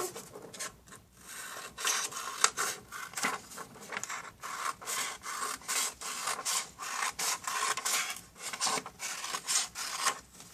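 Scissors cutting along a sheet of paper: a run of short, irregular crisp snips mixed with paper rustling.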